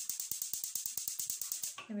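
Gas hob's electric spark igniter clicking in a fast, even run, about a dozen ticks a second, while the burner is being lit.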